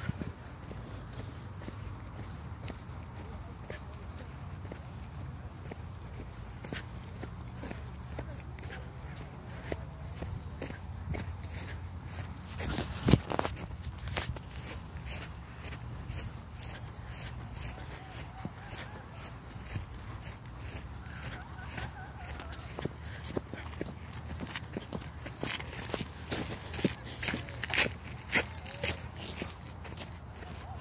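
Footsteps of someone walking over grass and a rubber running track: an irregular run of soft steps and clicks, busier in the last few seconds, with one sharp knock about halfway through.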